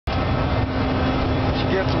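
Inside the cockpit of a Cessna Citation twin-turbofan business jet during a fast takeoff: a steady, loud rush of engine and airflow noise with a constant low hum underneath.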